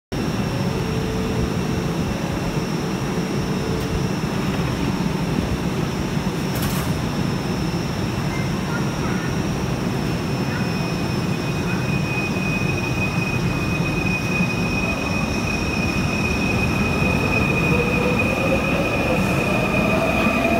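Rapid KL Kelana Jaya Line light-metro train at the platform, then pulling out: a steady low rumble with a single knock near the middle. A high steady whine sets in about halfway through, and in the last few seconds a motor whine rises in pitch as the train accelerates away.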